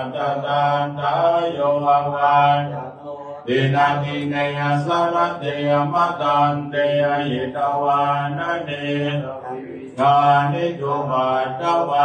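Thai Buddhist chanting of Pali verses, recited in a low, steady monotone. There are short breaks for breath about three seconds in and again just before ten seconds.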